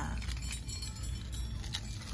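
Metal chain necklaces jingling and clinking lightly as they are handled and hung back on a display stand.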